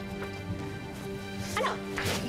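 Dramatic background score holding steady, sustained tones, with a short sharp exclamation cutting in about a second and a half in.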